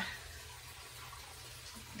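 Faint steady background hum and hiss with no distinct event: room tone in a pause between words.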